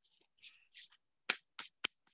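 Three short, sharp clicks in quick succession, about a quarter second apart, in the second half of a quiet pause, after a few faint soft hissy sounds.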